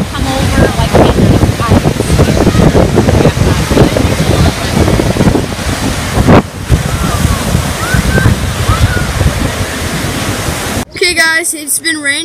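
Strong wind buffeting the microphone over waves breaking on a lakeshore, with faint distant shouts from people in the water. Near the end the sound cuts off abruptly to a quieter scene with a person speaking.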